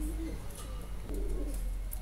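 A faint, low cooing bird call in the background, heard in short phrases over quiet room tone.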